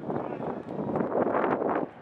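Outdoor training-pitch ambience: the mingled voices of a group of players over wind noise on the microphone, with a few short sharp knocks of footballs being caught and struck.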